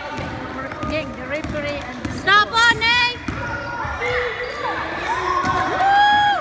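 A basketball dribbling on a hardwood gym floor, with a quick run of high sneaker squeaks about two seconds in as the loudest part. Spectators' voices carry in the echoing gym.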